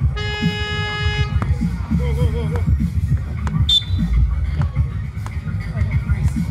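A game buzzer sounds once, a steady electronic tone lasting about a second, over background music with a steady beat. A short high squeak comes about halfway through.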